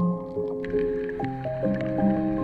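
Instrumental background music: a gentle melody of held notes, with a low bass note coming in a little past halfway.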